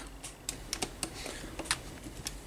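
Light, irregular clicks and taps of hard plastic as small screws are driven into a Tamiya FF-03 radio-controlled car chassis and its parts are handled.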